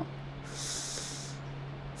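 A woman drawing one quick breath in, a short hiss about a second long, about half a second in.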